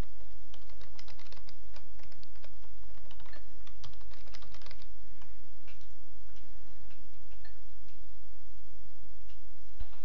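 Computer keyboard typing: a quick run of keystrokes for about the first five seconds as a new password is entered, then a few scattered clicks, over a steady low hum.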